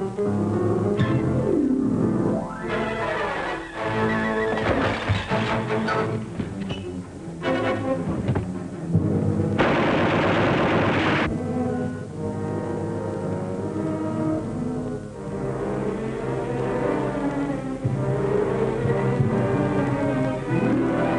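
Dramatic orchestral film score with strings. About halfway through, a burst of gunfire lasting under two seconds cuts across it.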